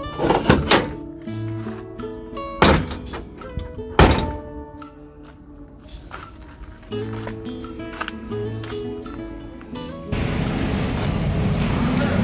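Background music with a plucked-string melody, over which a pickup's door is shut with loud thunks about half a second, two and a half and four seconds in. About ten seconds in, a steady rushing noise takes over.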